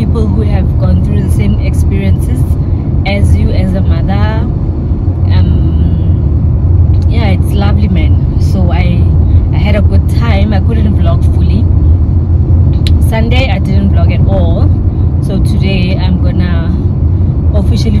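Steady low rumble of a car being driven, heard from inside the cabin, under a woman's talking.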